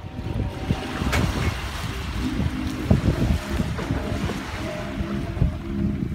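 Wind buffeting the microphone over small waves washing onto a sandy beach, with faint music playing in the background.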